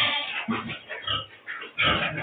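A farm animal calling in three or four short, low bursts about half a second apart.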